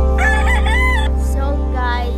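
A rooster crowing: one arched call about a second long, rising and then falling, followed by a shorter call near the end. Background music with steady low tones runs underneath.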